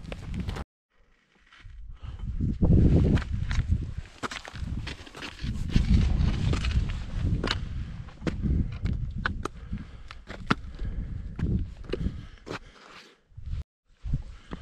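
Footsteps crunching and scraping on icy, slick snow: irregular sharp crunches over a low rumble on the microphone, which cuts out briefly about a second in.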